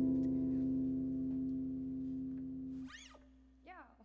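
The final strummed acoustic guitar chord of the song rings out and slowly fades, then stops about three seconds in. Right after, there are two short voice sounds that rise and fall in pitch.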